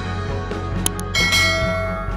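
Background music with a bright bell chime, like a notification bell, struck about a second in and ringing as it fades.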